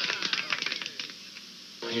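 A rapid run of sharp clicks, fading away over about a second as the commercial's soundtrack dies out, then a brief low lull before a man's voice starts near the end.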